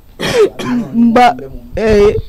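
A person's voice making short wordless vocal sounds: a cough-like burst near the start, then brief voiced sounds.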